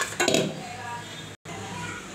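Steel ladle clinking and scraping against a steel pan while kadhi is being stirred, loudest in a short clatter near the start, over a steady low hum. The sound cuts out completely for a moment just past the middle.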